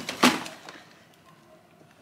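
A cardboard box knocking and scraping once as it is lifted out of a freezer drawer.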